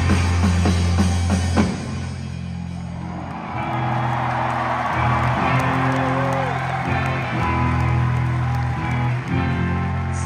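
Live rock band playing loudly, stopping suddenly about a second and a half in, followed by brief crowd cheering. Then slow, held low electric guitar notes ring out, with a couple of bending notes.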